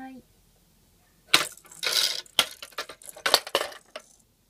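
A clear plastic sparkle ball rolling and clattering down a toddler's plastic ball-run slope: a string of sharp clicks and rattles, starting just over a second in and lasting about two and a half seconds.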